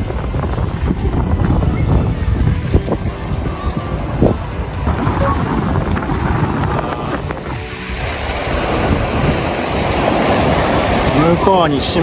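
Small waves breaking and washing up a sandy beach, with wind buffeting the microphone; the surf grows louder in the second half.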